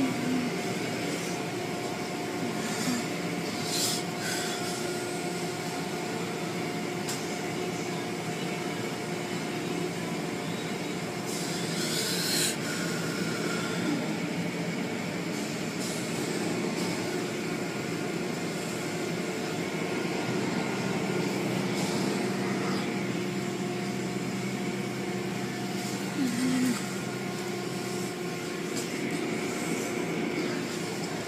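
Steady mechanical hum with a few constant tones, broken now and then by light clicks.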